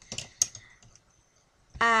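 Pens and pencils being handled in and around an open zip pencil case: a quick patter of small clicks and rustling, with one sharp click about half a second in, then quiet.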